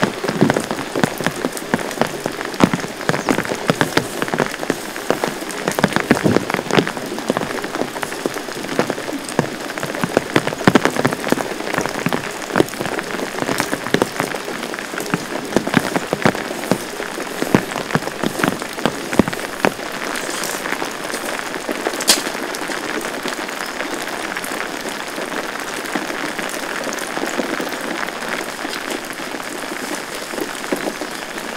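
Heavy rain falling, with many sharp individual drop hits close by over the first twenty seconds or so, then settling into a more even, steady hiss.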